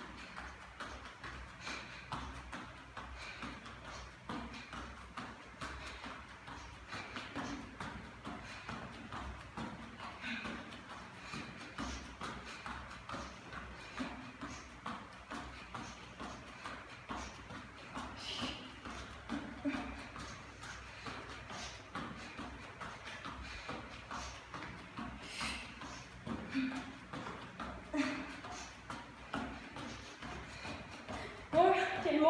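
Bare feet landing again and again on a rubber gym floor during jumping jacks, a steady rhythm of soft thuds and slaps.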